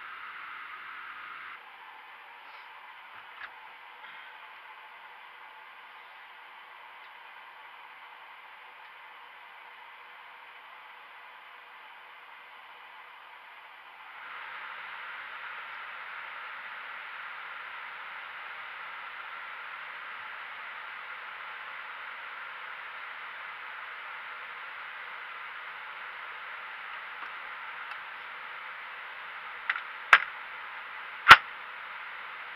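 Steady rushing hiss of fans and airflow in a Boeing 777 flight deck as its systems power up. It drops slightly about two seconds in, gives a couple of faint clicks soon after, and steps up louder about halfway through, then holds steady.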